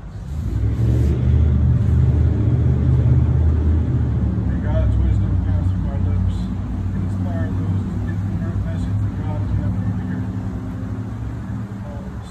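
A motor vehicle's engine runs nearby as a steady low rumble. It swells about half a second in, is loudest for the next few seconds, then slowly fades away.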